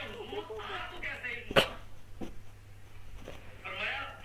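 Quiet talking, with one short, sharp sound about one and a half seconds in.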